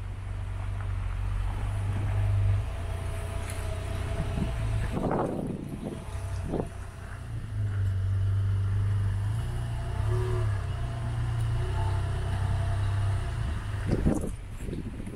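The Range Rover Evoque's 2.0 Ingenium TD4 four-cylinder diesel idling steadily, a low hum, with two brief noisy knocks about five and six and a half seconds in.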